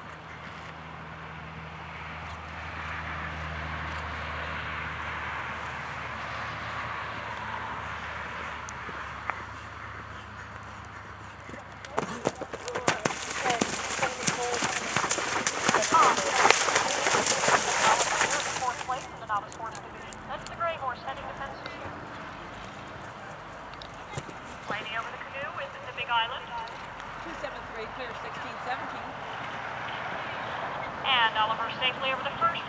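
A horse going through a water jump, its hooves splashing loudly for about seven seconds from about twelve seconds in. Before and after the splashing, fainter hoofbeats over steady background noise and faint voices.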